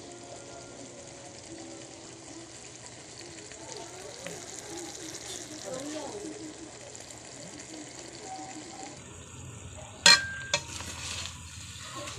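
Chicken stewing in tomato sauce in a coated pan, simmering and sizzling steadily. About ten seconds in a utensil strikes the pan with a sharp loud clack, followed by stirring scrapes and clicks.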